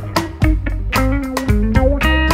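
Reggae band playing an instrumental passage: an electric guitar line stepping through notes over a heavy bass and a steady drum beat.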